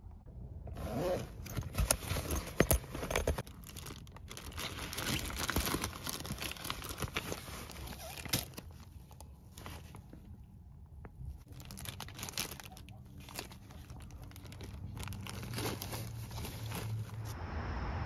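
Plastic breast-pump parts and a zip-top plastic bag being handled: rustling and crinkling with irregular sharp clicks and knocks, loudest about two to three seconds in.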